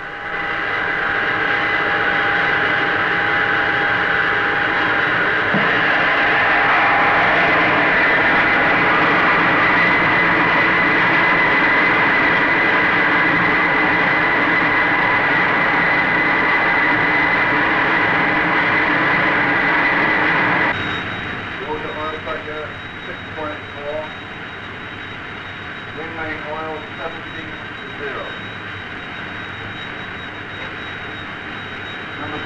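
Avrocar turbo rotor on its ground test rig, driven by air ducted from an Orenda turbojet, running with a loud, steady jet rush and whine. It builds over the first several seconds and cuts off suddenly about 21 seconds in, leaving a quieter hum with faint voices.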